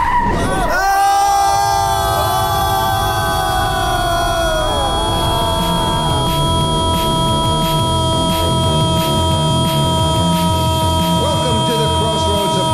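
Car skid sound effect right at the start, then an electronic drone of several held tones with sliding notes that fade over the first few seconds. About six seconds in, a steady music beat comes in under the drone.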